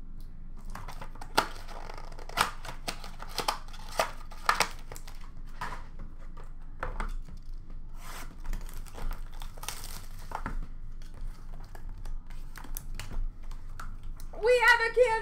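Cardboard trading-card boxes and their packaging being handled and torn open by hand: an irregular run of crinkling, tearing and sharp taps, with a few louder taps in the first half.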